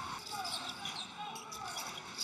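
A basketball bouncing on a wooden court over the arena's steady background noise.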